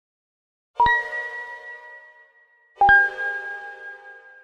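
Logo chime: two bell-like strikes about two seconds apart, each ringing out and fading away. The second strike is a little lower in pitch.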